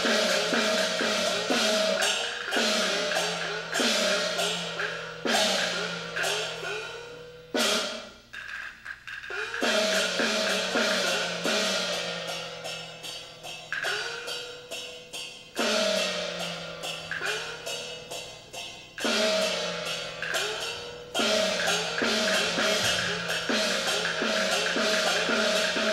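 Peking opera percussion ensemble (luogu) playing runs of gong and cymbal strokes, the small gong's pitch sliding upward after each stroke. The strokes come several a second, with a short break about eight seconds in.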